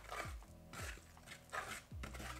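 A chopstick stirring flour and water in a wooden bowl, giving two short scrapes, about a fifth of a second in and again near the end. Faint background music with a soft low beat runs underneath.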